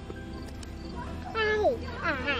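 A toddler's short, high-pitched vocal sound, falling in pitch, about one and a half seconds in, over a faint steady background.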